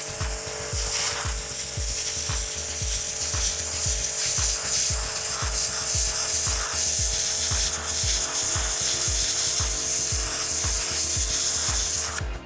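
Bosch Advanced Aquatak 140 pressure washer running, its 2100 W induction motor and pump giving a steady hum under the loud hiss of a narrow high-pressure water jet blasting into a brick and cutting a groove into it. Background music with a steady beat plays underneath.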